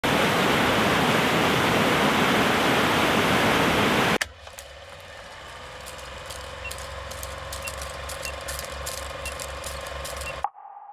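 A waterfall rushing steadily for about four seconds, then a sudden cut to an old-film countdown sound effect: a quieter, rhythmic movie-projector clatter with crackles and short high beeps about once a second.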